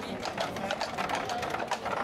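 Horse's hooves clip-clopping on the road, several quick, irregular clicks a second, as a horse-drawn carriage passes, over the murmur of a crowd.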